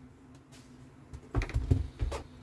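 A few short plastic clicks and knocks of handling on a workbench, clustered about a second and a half in, as a handheld diagnostic tablet is lifted off a circuit board.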